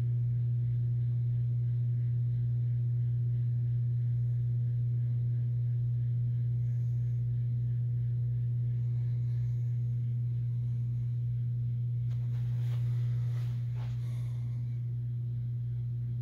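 Steady low electric hum of a small rod-dryer motor slowly turning a fiberglass fly rod so the wet epoxy on its thread wraps cures evenly. There are a few faint handling clicks about twelve seconds in.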